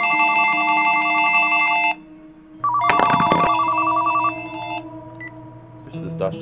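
Telephone ringing electronically: two trilling rings of about two seconds each with a short gap between, and a short knock partway through the second ring.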